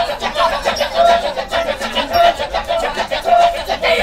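Balinese Kecak chorus: a large group of men chanting a rapid, interlocking "cak-cak-cak", with a short sung note rising over the chant about once a second.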